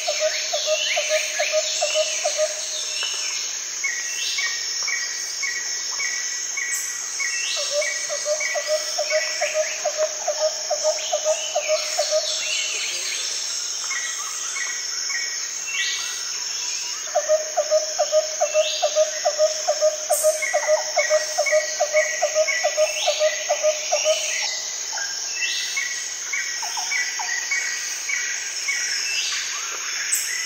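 A nature soundscape of insects and birds: a steady high insect drone underneath, bird calls in runs of quick repeated notes and short downward chirps, and three long runs of loud pulsed calls, the last and loudest starting about seventeen seconds in.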